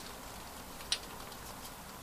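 Quiet room tone with a single faint click about a second in.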